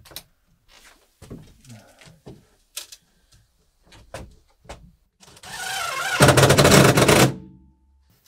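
Light knocks and handling clicks against the wooden ceiling ribs. Then, about five seconds in, a power driver runs up and rattles rapidly for about a second as it drives a screw overhead into a rib, then winds down.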